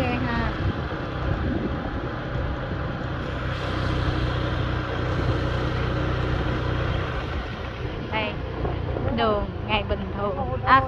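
Steady road and wind noise from a moving vehicle, with a low engine hum underneath. A voice breaks in briefly about 8 seconds in and again near the end.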